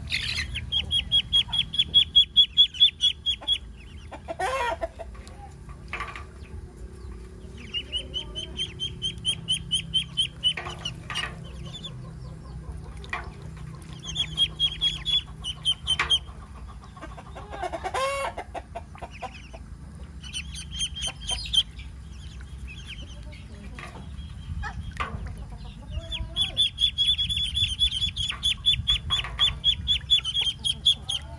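Muscovy ducklings peeping in quick runs of high, repeated notes, several bouts of a few seconds each with short gaps between. A couple of louder, lower calls stand out, about four seconds in and again near the middle.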